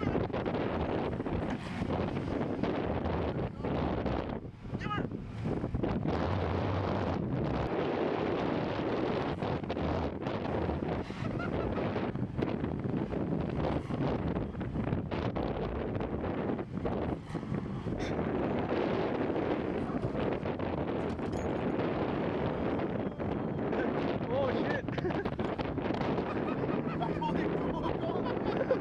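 Wind buffeting the microphone over the engines of a small Ford Festiva and a stuck SUV running and revving as the car strains on a tow strap to pull the SUV out of deep snow.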